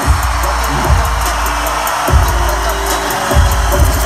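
Loud arena concert music: deep bass hits about once a second with drums, over a dense wash of crowd noise.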